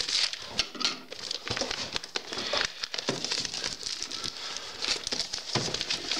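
Crinkling and rustling of a postal package's wrapping as it is handled, with many small clicks and taps.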